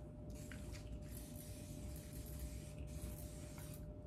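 Aerosol hairspray can spraying with a faint, weak hiss for about three seconds. The can is still about half full, but the owner thinks its pump is broken.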